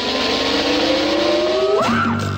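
Rising sound effect laid over the end card: a loud rushing noise with a tone that glides slowly upward, bending up and back down near the end as music comes in.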